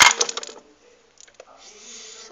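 Small plastic toy accessories for a Barbie fridge clattering together as they are picked through, a quick run of clicks in the first half second, then quiet.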